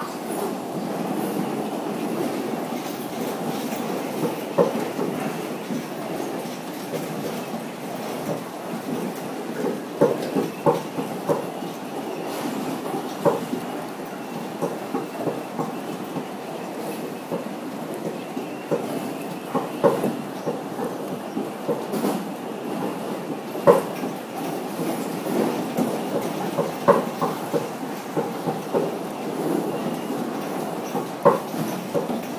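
Seoul Metro 4000-series subway train running at speed across a steel truss bridge, heard from inside the car: a steady rumble broken by frequent sharp clacks of the wheels over the rails.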